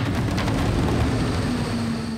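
A Santiago Metro Line 2 train from the line's 1970s-era cars running past a station platform: a steady, loud rumble with a hum that grows stronger near the end.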